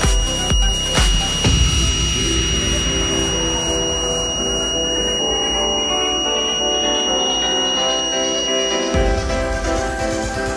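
Piezo buzzer of a homemade 9-volt door alarm sounding one continuous high-pitched tone: the alarm has been triggered. It cuts off suddenly about nine seconds in, under background electronic music with a steady beat.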